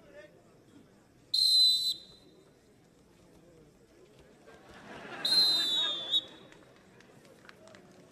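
Referee's whistle blown twice, two steady shrill blasts about four seconds apart, the second a little longer; the second ends the bout after a winning throw, with crowd noise swelling around it.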